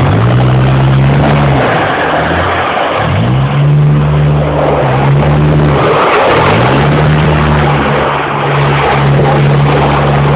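Stock 2001 Honda Civic EX coupe's four-cylinder engine working under throttle while the car slides on trays: the revs drop sharply and climb back three times, then hold steady, over a constant rushing noise.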